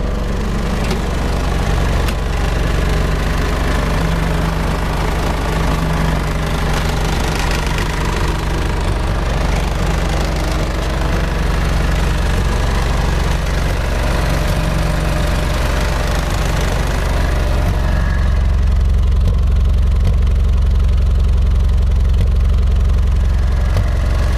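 International tractor engine idling steadily. About three quarters of the way through, the sound turns deeper and a little louder.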